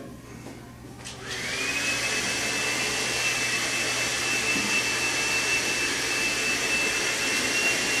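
A small electric blower motor switches on about a second in: its whine rises quickly and then holds one steady high pitch over a loud rush of air.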